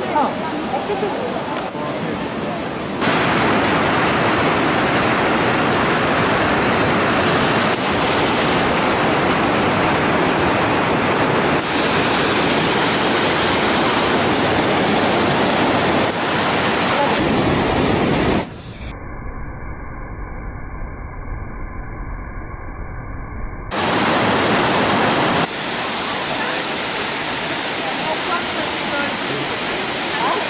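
Waterfalls: a steady rush of falling water, changing abruptly in loudness and tone at several cuts between clips. For about five seconds past the middle it is quieter and muffled, with the high end gone.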